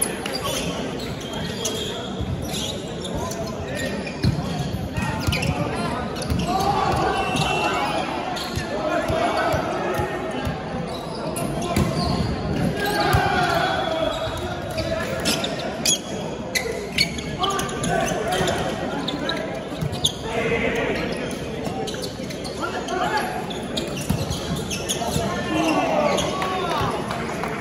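Volleyball rally in an indoor hall: players calling out, and sharp smacks of the ball being struck, several in quick succession about two-thirds of the way through.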